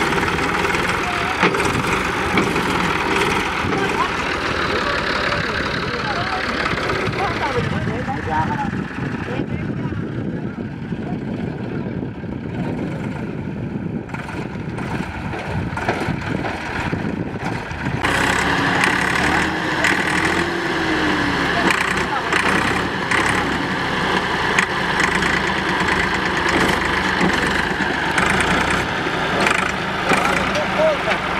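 Farm tractor's diesel engine running under load as the tractor tries to pull itself and its cultivator out of mud, with men's voices over it. The sound changes abruptly about two-thirds of the way in.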